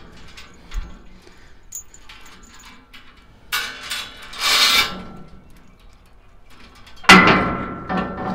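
Steel calving chain being wrapped around a bar of a steel squeeze-chute gate: a few light clinks, two short rattles of chain link about halfway through, and a loud ringing clank of chain striking the steel near the end.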